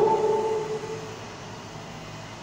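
A man's voice drawing out the end of a word on one steady pitch for about a second, then fading to quiet room noise.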